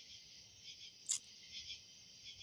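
Crickets chirring in a steady night-time chorus. There is one brief sharp click about a second in.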